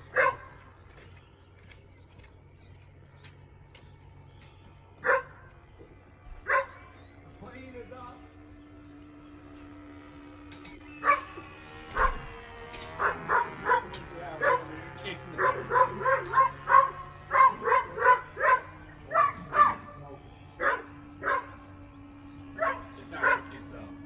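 A dog barking: a few single barks, then a fast run of barks from about halfway through. A faint steady hum lies underneath.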